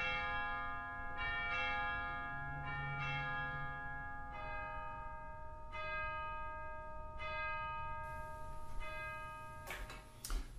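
Church bells rung in a slow sequence of different notes, a new stroke about every second and a half, each one ringing on under the next.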